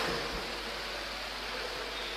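Steady, even background hiss with a faint low hum: room tone between spoken phrases.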